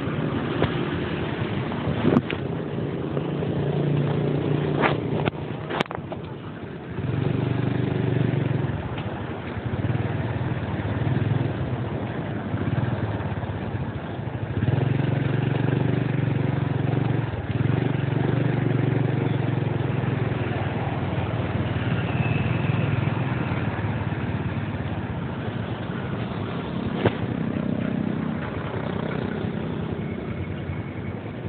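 Motor scooter engine running as it rides along a city street, its note rising and falling, over a steady wash of passing traffic. A few sharp clicks about 2, 6 and 27 seconds in.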